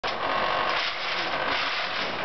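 A FIRST robotics competition robot's electric motors and gearboxes running with a steady whir as it drives.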